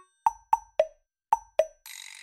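Five short, hollow, cartoonish plopping pops from the background music, three quick ones, a short gap, then two more, the third and fifth lower in pitch.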